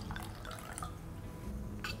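White wine poured from a bottle into a stemmed wine glass, a faint trickle of liquid. There is a short click near the end.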